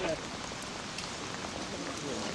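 Steady rain falling on a wet street: an even hiss with a few faint, sharper drops.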